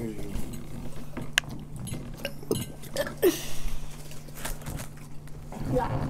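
Quiet mealtime table sounds: scattered light clicks and clinks of dishes and food containers, with faint voices, over a steady low hum.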